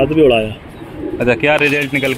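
Domestic pigeons cooing in two bouts, one near the start and one from a little past a second in.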